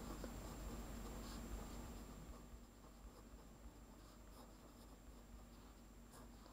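Faint sound of a pen writing on paper, dying away about halfway through.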